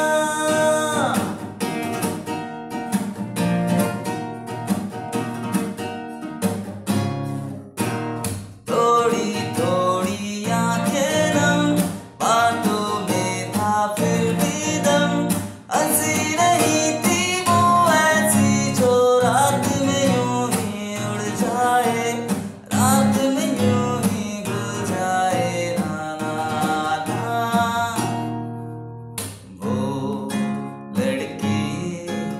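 A man singing along to his own strummed nylon-string classical guitar, the chords strummed in a steady rhythm under the melody. The playing dips briefly just before the end, then comes back in.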